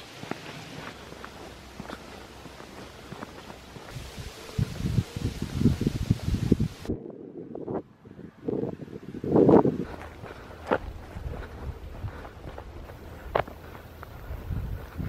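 Footsteps outdoors, heard as irregular low thuds, the loudest about nine and a half seconds in, with a couple of short clicks later.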